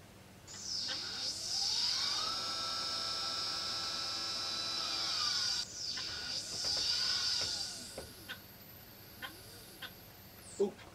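Motorised GoTo telescope mount slewing: the motor whine rises in pitch over about two seconds, holds steady at full slew speed, then falls away as it slows. A second, shorter rise and fall follows, then a small one near the end as the mount settles on its target.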